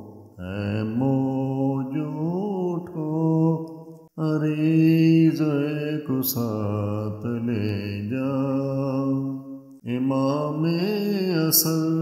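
Wordless male vocal chanting of a manqabat melody, long drawn-out notes rising and falling in pitch, in three phrases with brief pauses about four and ten seconds in.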